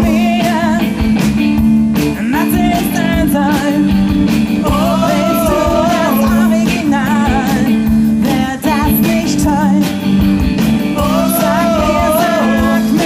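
Live rock band playing: electric guitar, bass guitar and drums, with a woman singing into the microphone.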